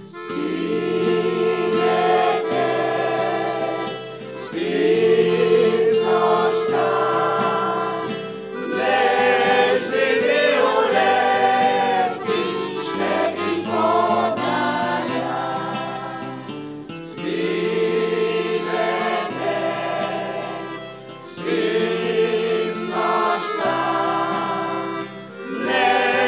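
Mixed choir of men's and women's voices singing an old Bulgarian urban song in harmony, with light guitar and accordion accompaniment. The lines come in phrases of about four seconds with short breaks between them.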